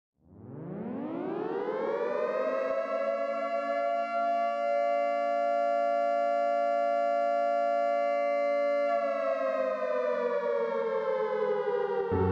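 Civil defense siren winding up from silence over about two seconds, holding a steady tone, then starting to wind down about nine seconds in. This is the 10 November remembrance siren that marks the moment of Atatürk's death.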